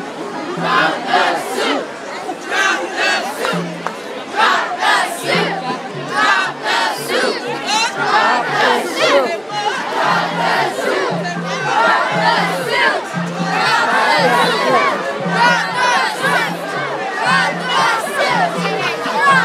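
Large crowd of marchers shouting and chanting together. A low repeating beat, about two pulses a second, runs underneath and is steadiest in the second half.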